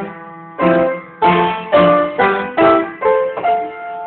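Piano played: a short phrase of about eight struck chords and notes, each ringing and fading, the last chord held and dying away near the end.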